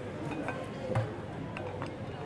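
Background music and voices of a busy hall, with a few light metallic clicks as the barrels and action of a double rifle are handled.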